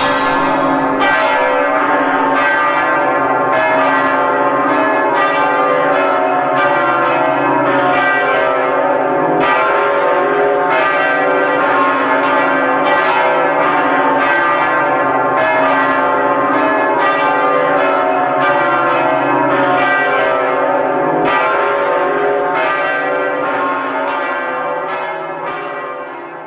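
Bells ringing a steady peal, a new strike about every two-thirds of a second over long overlapping tones, fading out near the end.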